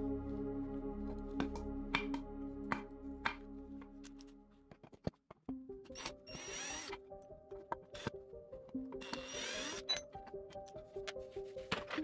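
Cordless drill/driver running in two short bursts of about a second each, a few seconds apart, driving screws into a cabinet handle, over background music.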